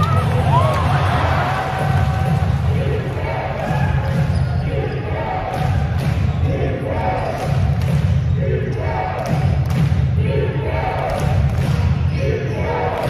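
Basketball arena crowd cheering in a repeated rhythm: a short chant about every second and a half, with sharp claps, over a steady low rumble.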